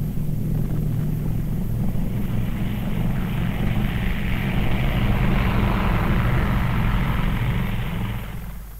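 B-29 Superfortress bomber's four radial piston engines and propellers running at takeoff power, a steady drone with a rush of noise above it that builds from about three seconds in and eases near the end.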